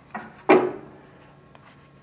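Two short knocks or clatters from tools and fuel-line parts being handled at the mower engine, a light one near the start and a louder one about half a second in, with a brief "oh".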